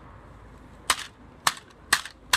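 Three sharp clicks about half a second apart as the hood of a damaged toy model car is pressed down; after the crash the hood will not stay closed.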